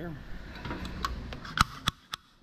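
A low rumble of handling noise with a few sharp clicks and knocks in the second half, the loudest two close together near the end, as a welder's ground clamp is picked up and handled. The rumble stops just before the end.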